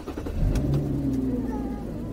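A car running, heard as a steady low rumble with a faint hum that slowly falls in pitch.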